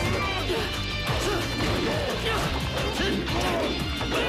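Fight-scene sound effects, a rapid run of punch, kick and crash impacts, over background music.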